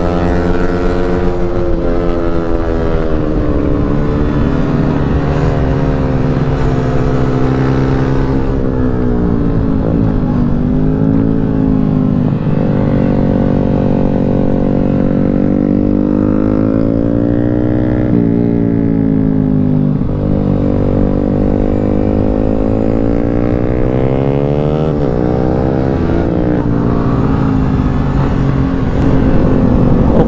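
Yamaha Sniper 155's single-cylinder engine heard from the rider's seat while being ridden hard on a race track. The engine note climbs and drops repeatedly as the rider works the throttle and gears through corners and straights, with wind noise rushing underneath.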